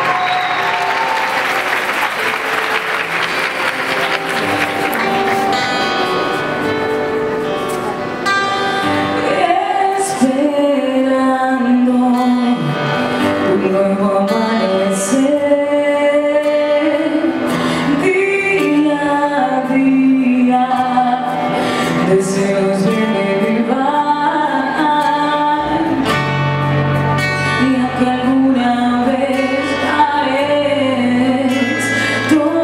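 Live acoustic band playing, guitars leading, with audience applause over the first few seconds that dies away. A woman's lead vocal comes in about nine seconds in and carries the melody, and a lower part joins near the end.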